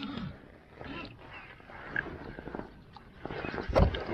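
Hooked largemouth bass thrashing and splashing at the surface beside a kayak, in a louder burst near the end, after a few seconds of faint rustling and clicks.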